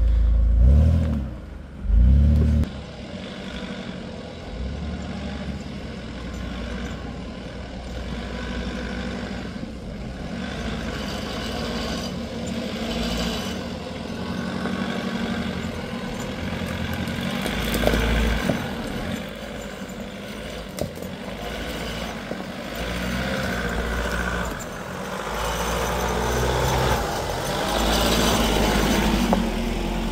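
Off-road SUV engines running at low speed as the vehicles crawl along a rough dirt track, with a few sharp knocks. A louder low rumble in the first couple of seconds.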